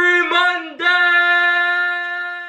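A man yelling through hands cupped around his mouth: two short syllables, then one long, high held shout.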